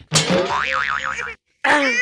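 Cartoon 'boing' sound effect with a wobbling, up-and-down pitch, starting sharply and cutting off just over a second in. A voice cries out near the end.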